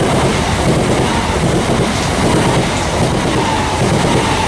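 Bombardier Class 387 Electrostar electric multiple unit running past the platform at speed: a loud, steady rush of wheels on rail and train noise, with a faint steady high tone in it.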